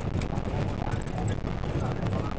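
A vehicle's steady low rumble as it drives over a rough, muddy dirt road, with frequent short rattles and knocks from the bumpy ride.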